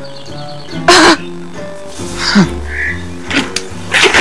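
Soft film score with sustained, held notes. A short, loud breathy sound cuts in about a second in.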